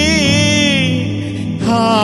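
A man singing a devotional song into a microphone over instrumental accompaniment, holding long notes with a wavering vibrato; a new note starts about one and a half seconds in.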